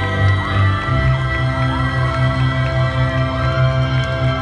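A group of singers on handheld microphones holding out the closing notes of a pop song over an amplified backing track, with a steady bass beat coming in about a second in. Some audience cheering.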